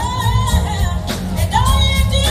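Live jazz band with a woman singing, held notes with vibrato over a heavy bass line, heard over the PA speakers from out in the audience.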